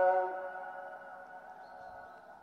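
A held sung note of the Islamic afternoon call to prayer (ikindi ezan), broadcast over mosque loudspeakers, ends just after the start. Its sound then dies away over about a second, leaving only a faint trace.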